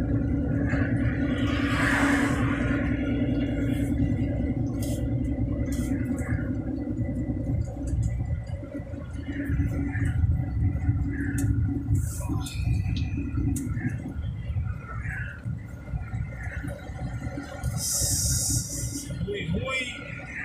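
Truck engine droning steadily with road rumble, heard from inside the cab while cruising on a highway. The drone eases somewhat after the first several seconds, and a short hiss comes near the end.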